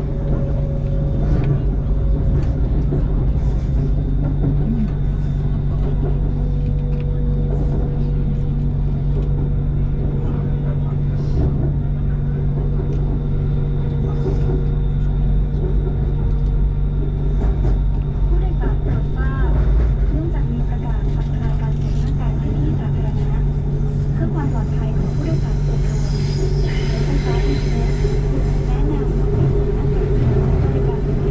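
BTS Skytrain car running on its elevated track, heard from inside: a steady low rumble and hum of the motors and wheels on the rails, with a faint steady whine. Near the end a higher hiss rises over the rumble.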